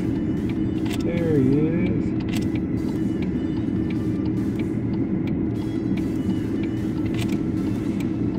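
Steady hum of a vehicle engine idling, heard inside the cab, with sharp camera shutter clicks now and then, a few in the first three seconds and a couple more near the end.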